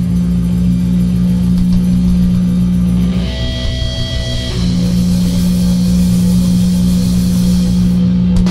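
Live rock band with distorted electric guitar and bass holding one loud, sustained low note, broken for about a second and a half in the middle by a higher held note, then back to the low drone.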